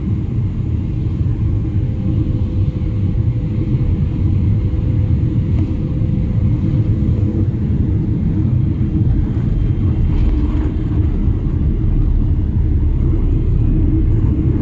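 Airliner cabin noise during landing: a loud, steady low rumble of engines and airflow heard inside the cabin. It carries on through touchdown and the roll along the runway, growing slightly louder in the second half.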